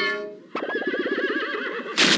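A horse neighing on an animated-film soundtrack: one long whinny with a quick wavering pitch, starting about half a second in after a held musical note dies away.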